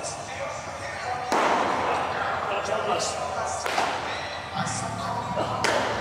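A thrown baseball popping into a catcher's mitt, among several sharp knocks and thuds, over faint background music.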